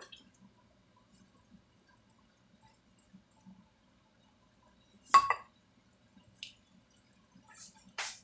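Quiet stirring of tofu and potatoes in a stainless steel frying pan with a wooden spoon over a faint low simmer. About five seconds in there is one sharp, ringing metallic knock against the pan, with lighter clicks a second or two later.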